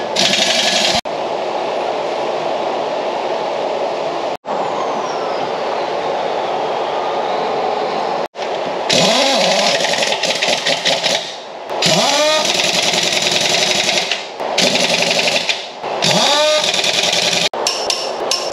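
Impact wrench hammering on a semi trailer's wheel nuts in three bursts of about two seconds each in the second half, each with a whine that rises and falls in pitch as the tool spins up and slows. Before that, a steady noise that cuts off abruptly three times.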